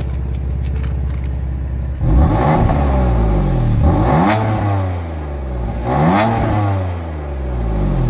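BMW M4 Convertible's twin-turbo straight-six idling, then revved twice, each rev climbing in pitch and falling back toward idle. The car is in its efficient mode, with the exhaust baffles closed.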